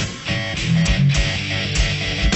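Heavy metal band recording in an instrumental passage: electric guitars over bass and drums, with regular kick-drum thumps and a brief drop in level just at the start.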